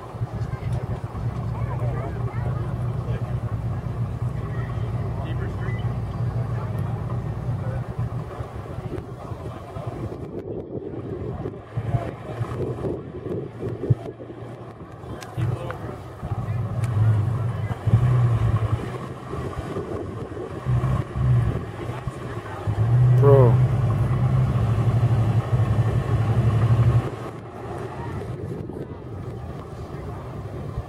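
Ford F-150 pickup engine running, then revving in repeated surges as the truck climbs onto a crushed sedan; the longest, loudest rev comes about three-quarters of the way through. A brief rising squeal is heard as that rev begins.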